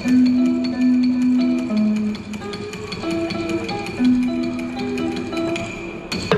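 Ca trù music: a phách bamboo clapper struck with sticks in quick, steady ticks, together with đàn đáy lute notes. Long held notes come in at the start and again about four seconds in.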